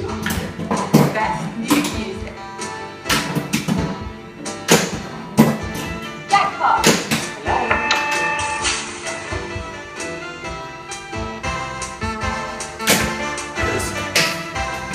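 Rethemed Williams Congo pinball machine in play: irregular sharp clacks and thuds from the flippers, bumpers and ball, over music.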